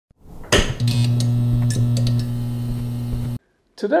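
Intro logo sound effect: a rising whoosh, then a steady low hum with a few faint crackles, which cuts off suddenly; a man starts speaking right at the end.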